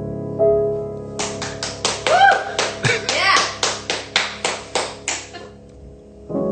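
A held piano chord rings out, then a run of even handclaps follows, about four a second for some four seconds. A voice briefly calls out among the claps in the middle.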